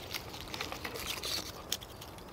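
Light rustling with scattered small clicks as cut flower stems and leaves are handled and pulled from a bunch.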